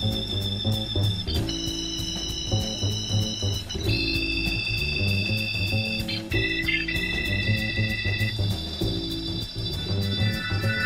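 Jazz combo playing an instrumental introduction: organ holding high chords that change every second or two, over bass and drums.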